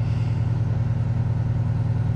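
Aerial-ladder fire truck's engine idling with a steady low rumble while it powers the raised ladder and platform.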